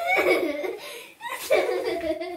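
Loud laughter from a woman and a girl tickling each other in play, in two long bursts of about a second each.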